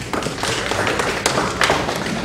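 A run of irregular taps and light knocks, several a second, with no speech.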